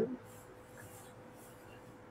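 Felt-tip marker writing letters on a whiteboard: faint strokes and rubs of the tip across the board.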